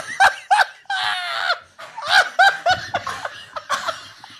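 Two men laughing hard together, in a run of short bursts with one longer, high-pitched stretch about a second in.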